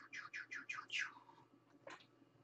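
A bird singing faintly: a quick run of about six high chirps, each falling in pitch, over the first second, then one more chirp near the end.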